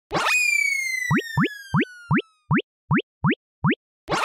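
Cartoon sound effects: a quick upward swoop, then a long falling whistle tone, under a run of eight short rising 'bloop' pops, about two or three a second.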